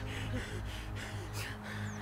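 Low, steady drone of the film's music score, with a man's faint gasping breaths over it.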